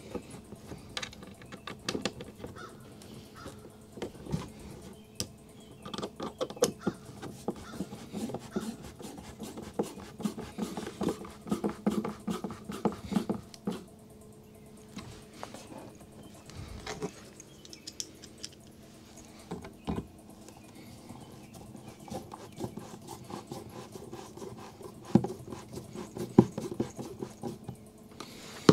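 Hand screwdriver driving the mounting screws of a plastic LP gas/CO detector into a wooden cabinet panel: irregular clicks, knocks and scrapes from the screws, the tool and the detector's housing.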